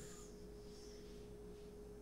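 Quiet room tone with a faint, steady, single-pitched hum running throughout.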